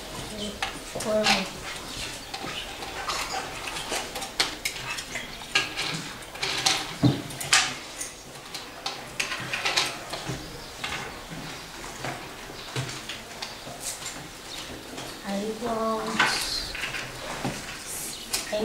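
Knife and fork tapping and scraping on a small plate as toy food is cut, many light irregular clicks.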